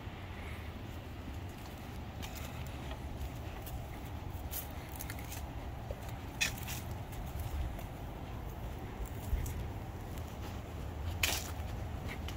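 Footsteps on grass and dry fallen leaves, with a few short, sharper crackles, over a low steady rumble on the microphone.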